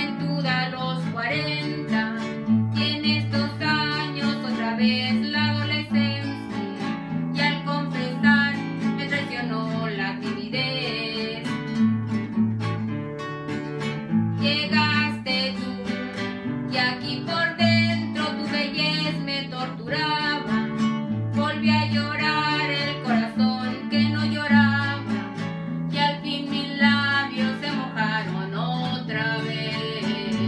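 Two acoustic guitars playing a ranchera: a requinto picks a quick melodic lead line over a second guitar strumming chords with alternating bass notes.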